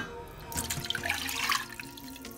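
Milk pouring from a ceramic mug into a stainless steel saucepan, a splashing trickle that starts about half a second in and lasts just over a second.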